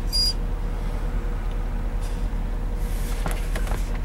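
Steady low engine rumble of a truck idling, heard inside the cab. A German Shepherd puppy gives a brief high whimper right at the start.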